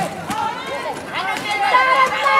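High-pitched voices calling out across an outdoor basketball court, several overlapping, growing louder near the end.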